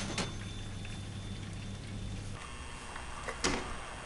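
Quiet indoor room tone with a low steady hum that cuts off abruptly about two and a half seconds in. A different, fainter room ambience follows, with a single brief click about a second later.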